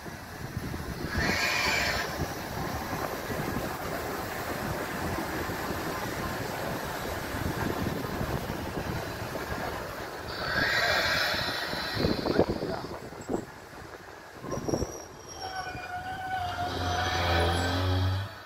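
Molli narrow-gauge steam train running past: a steady rumble from the locomotive and carriages, with two short shrill bursts, one about a second in and one about ten seconds in. Near the end, as the carriages pass, there is a held squealing tone from the wheels.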